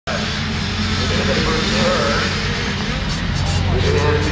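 A pack of small youth motocross bikes racing together, their engines revving and rising and falling in pitch, over a steady low drone.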